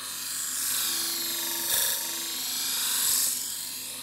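A kitchen knife blade being ground on the spinning horizontal abrasive disc of an ADEMS Full Drive sharpening machine: a steady high grinding hiss that swells about two and then three seconds in, over a low motor hum.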